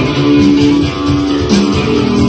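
Live rock band playing loudly, with guitars and bass carrying sustained notes.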